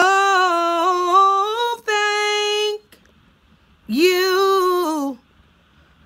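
A woman singing a gospel praise unaccompanied: long held notes with wavering pitch, in two phrases with a pause of about a second between them.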